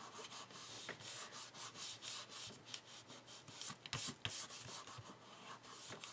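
Faint, irregular rubbing and light rustling of paper under the fingertips as a glued cardstock piece is slid a little and pressed into place, with a few small ticks.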